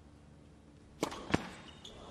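A tennis ball struck hard by a racket on the serve about a second in, followed a third of a second later by a second, louder sharp impact of the ball.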